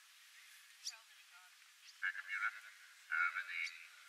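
A person's voice talking, thin and with no low end, starting about halfway through; a faint tick just before.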